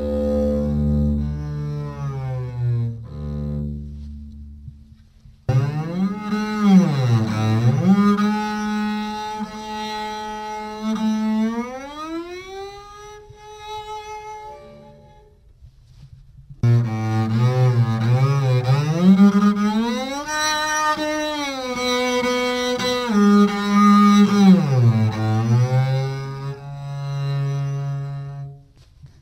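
Solo double bass, bowed, demonstrating glissando: held notes joined by long slides up and down in pitch. It plays two phrases, the first fading out around the middle and the second starting about sixteen seconds in.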